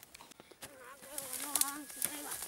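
A wavering buzz that starts a little over half a second in and lasts just over a second, like a flying insect passing close to the microphone, with a few short clicks.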